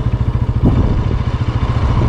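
Motorcycle engine running while the bike is ridden, a steady low rapid pulsing from the exhaust heard close up from the rider's seat.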